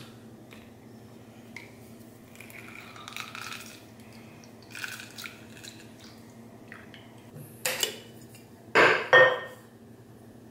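A hand-held metal citrus squeezer being handled and pressed on a lime half, with quiet scraping and handling sounds. A few sharp metallic clinks with a short ring come in the last couple of seconds.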